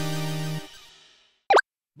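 Short intro jingle ending on a held chord that cuts off and fades away, followed about a second and a half in by a single brief pop sound effect.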